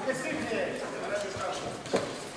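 Boxing in a ring: shouting voices from ringside over a light patter of the boxers' footwork on the ring canvas, with a sharp thud just before the end.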